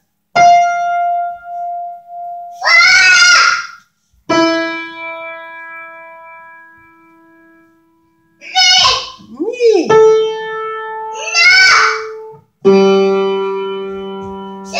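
Electronic keyboard playing single held notes one at a time, each starting sharply and fading, the last sounding two pitches together. A small child's voice answers in short high calls between the notes, naming each note in an ear-training game.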